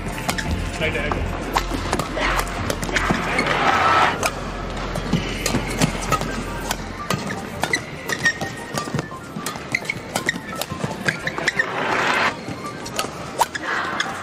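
Badminton rally: rackets striking the shuttlecock in quick exchanges and shoes squeaking on the court. Crowd noise swells as points end, about three to four seconds in and again near twelve seconds.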